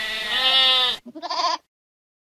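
Two bleats: a long quavering one of about a second, then a short one.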